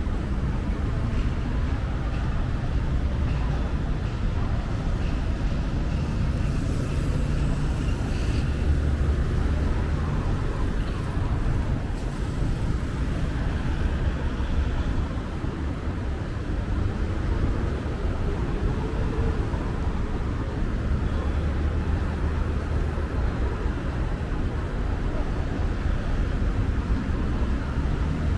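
City road traffic: cars and vans passing through a junction, a steady low rumble of engines and tyres.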